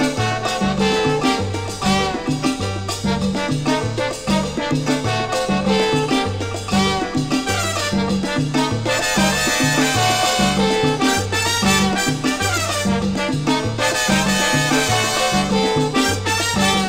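A salsa band plays an instrumental passage with no vocals over a bass line that repeats the same pattern throughout.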